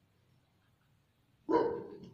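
A single dog bark about a second and a half in, after a near-silent stretch.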